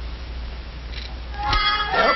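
Faint hiss and hum of an old film soundtrack, then about one and a half seconds in a sharp hit followed by a held, high-pitched cartoon sound cue.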